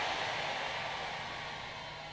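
Steady background hiss with a faint low hum, slowly fading away between the preacher's lines.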